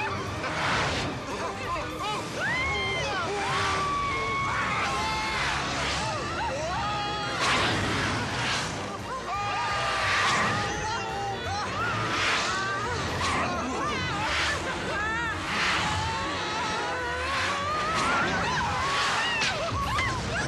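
People shouting and screaming without words over an energetic music score, with repeated rushes of noise as a miniature rider-carrying toy race car speeds along plastic track.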